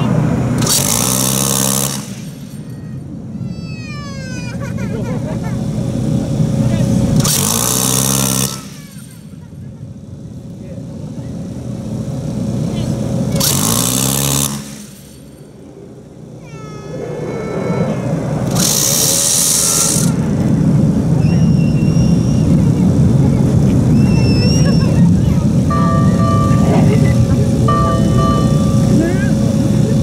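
VADS 20 mm six-barrel M61 Vulcan Gatling gun firing blanks in four short bursts of about a second each, roughly six seconds apart, each a fast buzzing rip. A steady vehicle engine or generator hum runs underneath and grows louder after the last burst.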